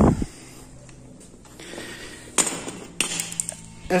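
Two sharp metallic knocks, about two and a half and three seconds in, from the aluminium gear-lever kit being handled.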